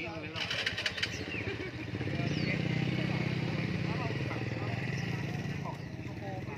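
A motorcycle engine running close by, swelling louder about two seconds in and easing off near the end, with caged songbirds chirping over it.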